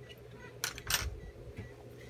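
Two short clicks of metal dental hand instruments, less than a second apart, about two-thirds of a second in, over a steady low hum.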